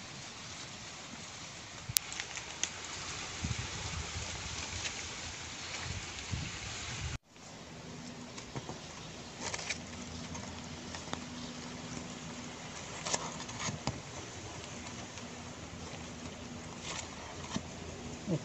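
Steady outdoor hiss with scattered light clicks and knocks of thin wooden poles being handled and lashed together with vine. After a sudden break partway through, a faint steady low hum sits underneath.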